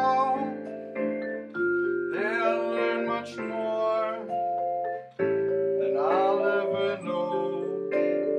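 Musser vibraphone played with four mallets, chords and melody notes struck in clusters and left ringing, over a play-along backing track with a low bass line. A voice sings wordlessly along in two short passages.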